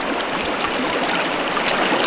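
Steady rushing of a fast-flowing creek's current around the wading angler.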